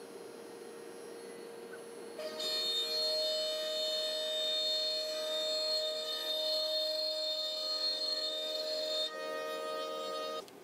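i2R CNC router running a cut in an oak workpiece: a steady, many-toned machine whine from the spindle and the stepper drives sets in about two seconds in and changes pitch about a second before the end as the head changes its move.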